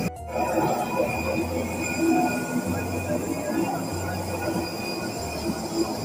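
Background music with a repeating bass line, laid over the murmur of passengers talking inside a crowded bus cabin.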